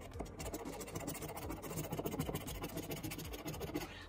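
A red-rimmed coin scratcher scraping the coating off a paper scratch-off lottery ticket in rapid back-and-forth strokes.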